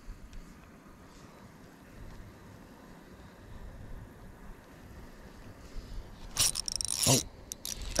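A spinning reel and rod handled close to the microphone during a retrieve, quiet for most of it. Near the end comes a sudden run of rattling, clicking handling noise as a fish strikes and the hook is set, followed by a short exclamation.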